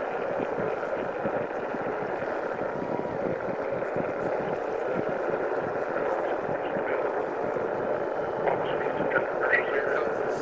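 Distant roar of an Atlas V rocket's RD-180 engine climbing away after liftoff, heard from about three miles off as a steady, crackling noise.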